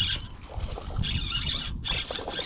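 Spinning fishing reel whirring in short bursts while a feisty fish is played on the line, over wind rumbling on the microphone.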